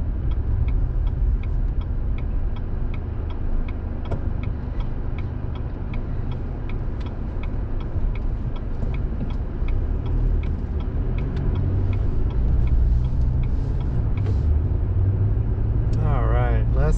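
A car's turn-signal indicator clicking steadily at about two clicks a second during a right turn, over the low rumble of the car driving, heard from inside the cabin. The clicking stops a few seconds before the end, once the turn is made.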